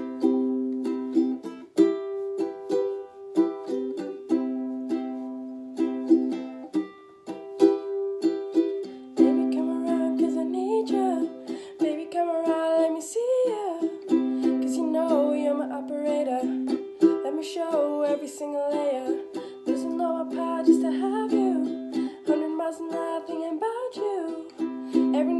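A ukulele strummed in a steady rhythm, alone at first; about nine seconds in, a young woman's solo singing voice comes in over the strumming.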